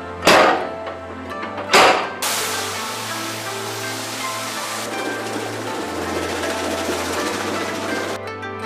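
Background music over two heavy thumps about a second and a half apart from a machine stamping paper-mulberry bark. From about two seconds in comes a steady rush of water churning in a tiled vat where the kozo fibre is rinsed.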